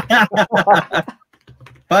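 People laughing in a quick run of short 'ha-ha' bursts that dies away after about a second.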